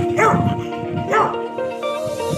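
A dog barking twice, short sharp barks about a second apart, over background music with steady held notes.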